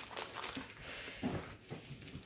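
Faint rustling and crinkling of a rolled diamond painting canvas, its paper cover and a plastic bag of kit parts, as it is unrolled and smoothed flat by hand.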